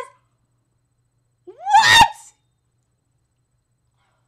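A woman's single short vocal outburst, rising in pitch and cut off sharply, about one and a half seconds in; otherwise near silence.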